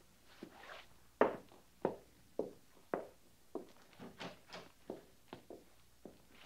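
Radio-drama sound effect of footsteps walking at an even pace, about two steps a second, each step a short knock.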